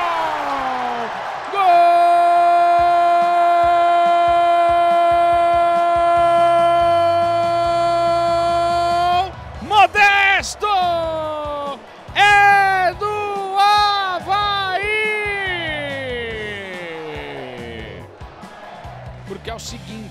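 Football commentator's goal shout: one long held call of about seven and a half seconds, then several shorter shouted calls that fall away in pitch.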